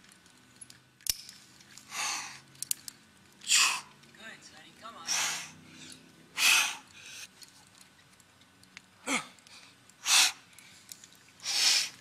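A rock climber's sharp, forceful exhalations from the strain of hard crack moves: about seven loud breaths, one every second or two, one of them near the end carrying a short falling grunt. A single sharp click sounds about a second in.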